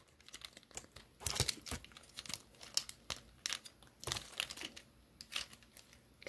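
Plastic parts of a Transformers Studio Series Voyager Class Optimus Prime action figure clicking and rattling as they are handled and pushed into place during transformation: faint, irregular small clicks and taps.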